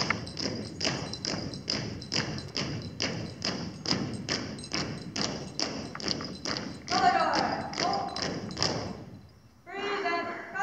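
Marching footsteps of a color guard on a stage: hard-soled shoes striking the boards in step, about three footfalls a second. A voice calls out about seven seconds in, and the steps stop shortly before the end as the guard halts.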